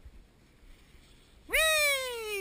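A woman's high-pitched, drawn-out vocal exclamation, close and loud, starting about one and a half seconds in and slowly falling in pitch.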